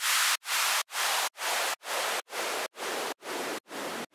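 Rhythmic pulses of white-noise hiss, about two and a half a second, each cut off sharply and slowly getting quieter: a gated noise effect fading out at the end of an electronic dance remix.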